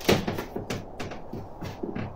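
A sharp click at the start, followed by a string of fainter, scattered clicks and rustles in a small room.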